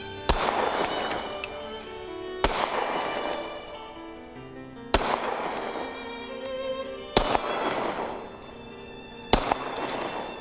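Semi-automatic SIG Sauer P220-series pistol fired five times, each shot about two and a half seconds apart and trailing a ringing echo that dies away.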